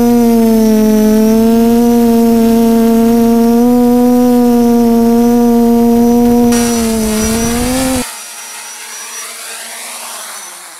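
Quadcopter's electric motors and propellers whining steadily in flight as heard from the onboard camera, the pitch wavering slightly with throttle. About eight seconds in it cuts off abruptly and a much quieter whir follows.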